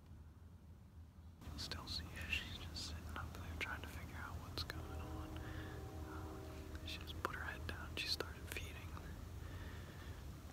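A man whispering close to the microphone, starting about a second and a half in.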